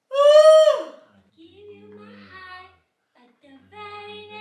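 A woman's loud, high-pitched drawn-out call lasting about a second and falling in pitch at its end, followed by a quieter, lower drawn-out vocal sound.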